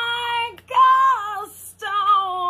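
A woman singing unaccompanied in full, strained voice: long, high, held notes with short breaths between them, each note sliding down in pitch as it ends.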